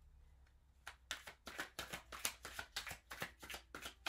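A tarot deck being shuffled by hand, cards dropped from one hand into the other: a quick run of soft card slaps, about five a second, starting about a second in.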